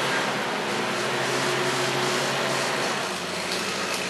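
A vehicle engine idling steadily, out of sight, under a continuous hiss. Its low hum weakens a little about three seconds in.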